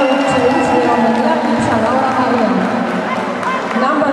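Audience in a hall talking and calling out, many voices at once, with background music under it.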